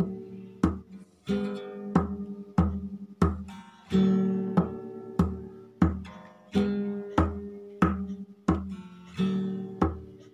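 Acoustic guitar strummed in a steady rhythm, about one stroke every two-thirds of a second, each chord ringing and fading before the next, with a heavier stroke roughly every two and a half seconds.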